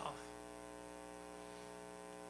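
Faint, steady electrical hum with a buzzy string of overtones, unchanging throughout: mains hum in the live sound and recording system, heard in a pause in the talk.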